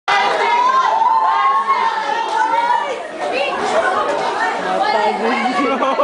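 Crowd chatter and voices in a hall, with one voice holding a long, wavering note for the first two to three seconds.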